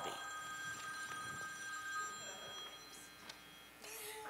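Faint ringing of several steady high-pitched tones at once, fading out a little over two seconds in.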